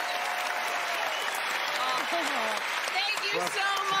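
Studio audience applauding, with voices calling out over the steady clapping.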